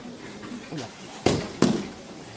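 Two sharp impacts about a third of a second apart, each with a short echo, in a large hall.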